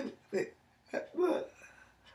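A woman's voice in three short, broken bursts of syllables, the longest a little past the middle.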